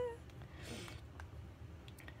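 A woman's brief, high, squeaky whine of frustration at the start, then faint rustling and a few light clicks as her hair is gathered up on top of her head.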